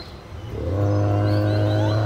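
Animatronic Triceratops's recorded bellow played through its speaker: a loud, deep call that starts about half a second in and holds one steady pitch.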